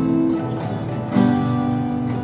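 Cutaway acoustic guitar being strummed. One chord rings on, and a new chord is strummed about a second in.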